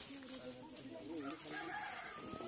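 A rooster crowing in the background, one drawn-out wavering call.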